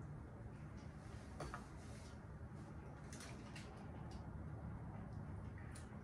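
Quiet room tone with a few faint, soft clicks and squishes: hands and a knife working garlic into slits in a raw Boston butt lying on foil.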